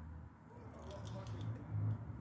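Quiet room with a low steady hum and a few faint small clicks, with a slight swell in level near the end.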